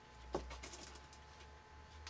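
Wiring harness being handled on a battery pack: a sharp click about a third of a second in, then a few light, high metallic clinks over the next second, over a faint steady low hum.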